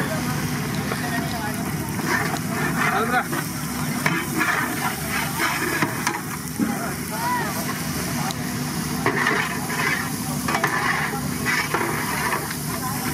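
Coated prawns sizzling as they deep-fry in a large metal kadai of hot oil, with a long metal ladle stirring them and scraping against the pan.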